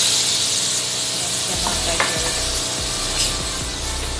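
Diced potatoes, carrots and chicken sizzling in a hot wok over a gas flame, with a spatula stirring. Two sharp clicks of the spatula against the pan about one and a half and two seconds in.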